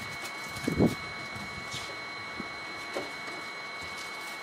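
Soft handling sounds of small items being put away on a wooden shelf: a dull knock about a second in and a few light taps, over a faint steady high-pitched whine.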